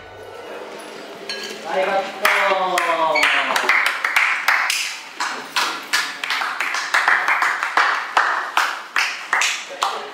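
A few people's voices calling out and talking, with scattered hand claps coming in a couple of seconds in, just after a band stops playing.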